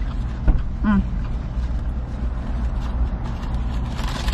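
Steady low hum of a parked car's engine idling, heard from inside the cabin, with one short click about half a second in.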